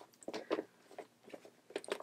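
Faint, scattered rustles and soft knocks of a handbag and a small planner being handled as the planner is pushed into the bag.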